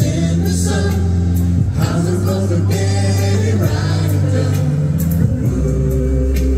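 Live band playing a slow refrain, with voices singing over long sustained bass notes and steady cymbal strokes.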